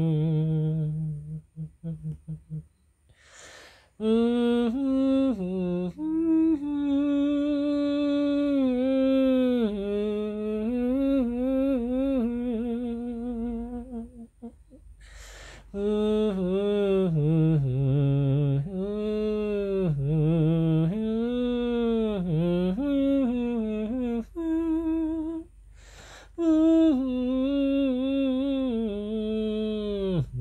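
A voice humming a wordless melody in imitation of a saxophone, sliding between notes in long phrases, with short breaks for breath and a brief laugh about six seconds in.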